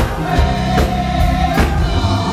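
Gospel choir singing together to a steady beat of about two and a half strokes a second.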